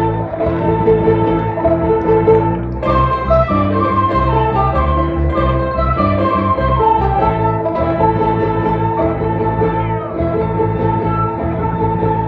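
Instrumental music: a melody line moving over a steady bass pattern, with a brief break about three seconds in before the next phrase.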